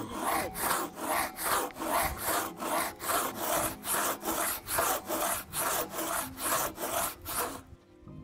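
Hand crosscut saw, worked by two people, cutting across a wooden block to shingle length. Even back-and-forth strokes come about three a second and stop just before the end.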